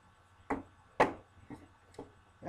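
Plastic wrestling action figures knocking against a toy wrestling ring as they are handled: two sharp knocks half a second apart, the second much the loudest, then two fainter ones.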